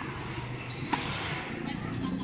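A single sharp tennis-ball impact about a second in, over voices talking in the background.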